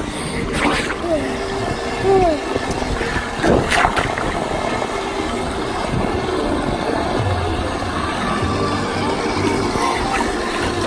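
Swimming-pool water splashing and sloshing close to a microphone held at the water surface, with a child laughing and shrieking, over background music.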